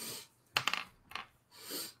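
Faint clicking of a computer keyboard: a quick cluster of clicks about half a second in and a single click a little later, with soft breath-like hiss around them.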